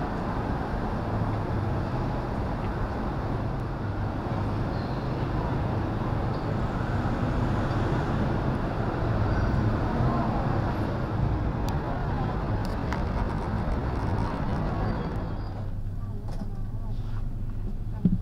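Traffic noise of passenger vans and other vehicles running at a bus terminal platform under an overpass, a steady mixed rumble. About 15 seconds in it gives way to a quieter, steady low hum inside a van cabin.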